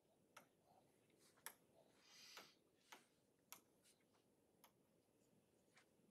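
Near silence with about six faint clicks of a stylus tapping a tablet screen while handwriting, and a soft brief scratch of a pen stroke about two seconds in.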